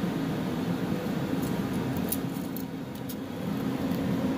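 Chevy 400 V8 idling steadily with an even low rumble, with a few light ticks from the wiring being handled.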